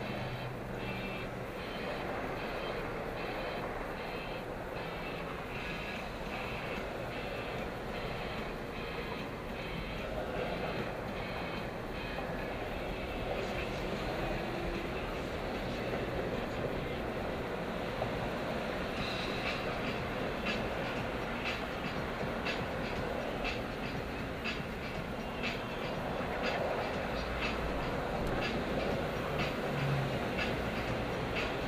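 Road and engine noise inside a car's cabin in slow freeway traffic, with a light ticking about twice a second that stops about 13 seconds in and resumes about 6 seconds later.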